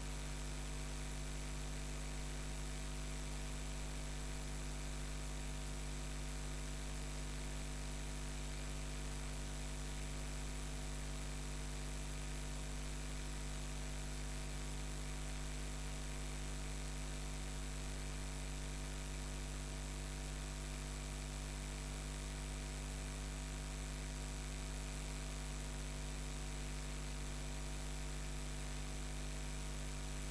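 Steady electrical mains hum: a low hum with a ladder of overtones above it and a faint hiss, unchanging throughout.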